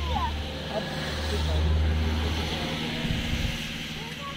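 A low steady rumble that swells to its loudest about two seconds in and eases off near the end, with faint voices over it.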